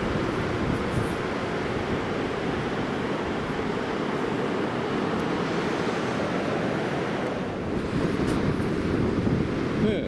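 Steady rush of strong wind buffeting the microphone, over the wash of surf breaking on the shore.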